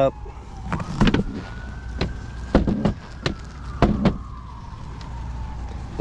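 Electric recliner mechanism on a yacht's bow sun-pad raising the backrest, with a faint tone that slowly falls, rises and falls again, and a handful of sharp knocks.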